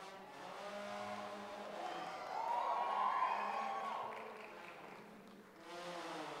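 Brass band horns playing faint held notes. About two seconds in, one note swells and slides up and back down, the loudest part, then fades.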